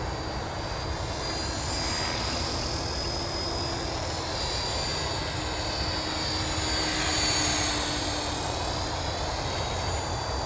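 Align T-Rex 450 electric RC helicopter in flight: a steady high-pitched motor and rotor whine that rises and falls in pitch as it manoeuvres, growing loudest a little after seven seconds in.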